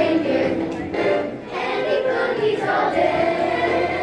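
A children's choir of fifth graders singing together with musical accompaniment, with a short break between phrases about a second and a half in.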